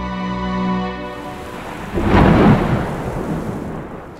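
Rain falling steadily, with a clap of thunder about two seconds in that is the loudest sound and rumbles away under the rain.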